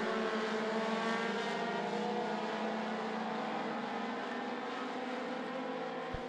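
Four-cylinder dirt-track race cars running together as a pack, a steady engine drone that slowly gets quieter.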